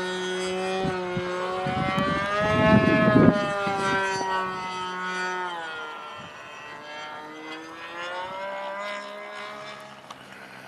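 Two-stroke Tower Hobbies .75 glow engine of a Great Planes Stick 60 RC plane in flight overhead. Its note bends up and down in pitch as the plane passes and turns, loudest about three seconds in, then grows fainter as the plane flies off.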